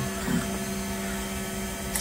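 Large DIY H-bot 3D printer running, its NEMA 23 stepper motors driving the print head across the bed at 40 mm/s while it lays down the first layer; a steady hum with a few held tones.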